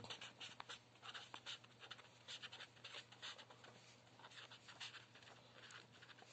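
Marker pen writing a word on paper: faint, quick scratchy strokes.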